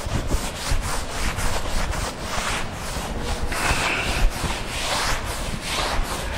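Cloth duster being rubbed back and forth over a chalk blackboard, erasing chalk writing in a quick, continuous series of wiping strokes.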